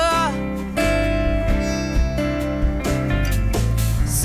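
Acoustic guitar strummed in a live song. A held sung note with vibrato fades out just after the start, and the guitar then carries on alone between vocal phrases.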